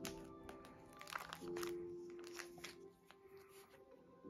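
Soft background music, with several short crinkles of plastic binder sleeves as a photocard in a clear sleeve is pulled from its pocket.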